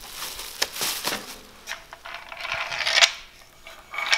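Bubble wrap rustling and crinkling as an LED light bar is pulled out of it and handled, with a few light clicks and knocks. A swell of rustling builds about three seconds in and stops sharply.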